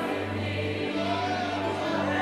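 Soft live gospel worship music: sustained chords over a held low bass note that is played again about a second in.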